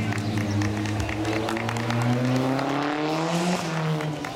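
A motor vehicle's engine revving up, its pitch rising smoothly for about three seconds before it cuts off near the end, with scattered claps.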